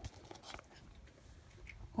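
Faint, irregular small clicks and smacks of a cat licking and chewing a pinch of catnip.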